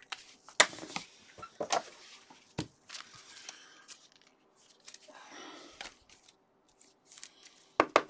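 Gloved hands handling trading cards: scattered light clicks, taps and rustles as the cards are sorted and slid, with a longer rustle about five seconds in.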